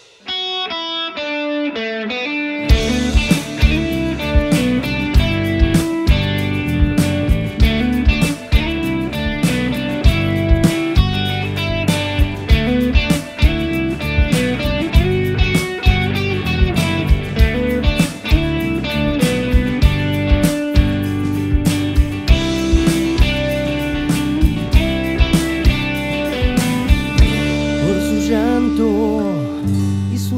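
Instrumental passage of an indie rock band: a single line of picked notes plays alone, then drums, bass and electric guitars come in about two and a half seconds in and carry on with a steady beat.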